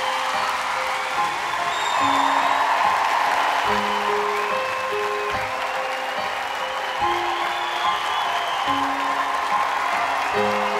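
Studio audience applauding and cheering over instrumental backing music with slow, held notes.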